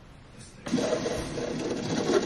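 Keurig single-serve coffee maker starting to brew, its pump whirring steadily. The sound starts suddenly less than a second in.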